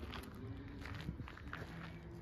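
Soft footsteps on a dirt path, fairly faint and irregular.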